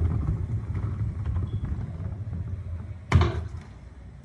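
Low rumble of a large SUV moving slowly, with one loud thud about three seconds in as a plastic wheelie bin is set down on paving.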